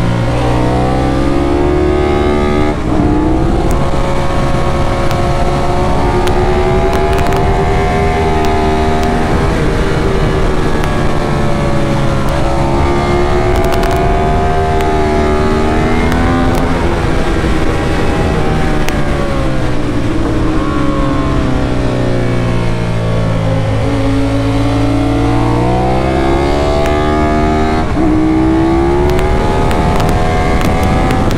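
Ducati 916's V-twin engine at track speed, heard from on board the bike: it revs up, drops in pitch at each gear change, falls away as it slows for corners and climbs again.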